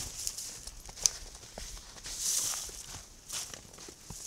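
Footsteps crunching through snow and dry brush close to the microphone, an irregular run of crunches with a sharp click about a second in.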